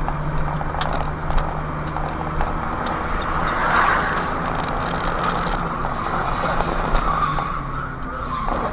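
Car engine and tyre road noise heard through a dashcam inside a moving car, a steady hum. About four seconds in there is a brief swell of tyre noise, like a skid.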